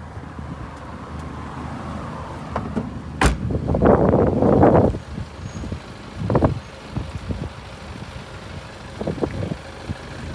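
BMW 5 Series saloon boot lid shut with a single sharp slam about three seconds in. It is followed by a loud second-long rush of noise, then a few lighter knocks, over a steady low hum.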